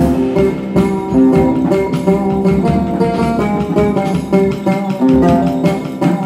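Live oud and drum kit duo playing: the oud picks a melody of quick, short notes while the drums and cymbals keep up a running pattern of light hits.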